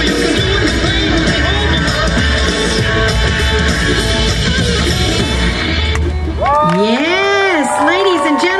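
Dance-routine music playing loudly over stage speakers with a heavy bass, stopping about six and a half seconds in. Audience cheering and whooping follows, many voices rising and falling in pitch.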